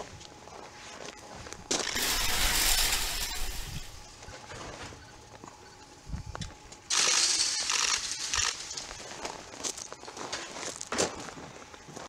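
Concrete shovelled down a metal chute into a foundation in two pours: a rushing slide beginning about two seconds in and lasting about two seconds, then another about seven seconds in, with light scraping and clicks between them.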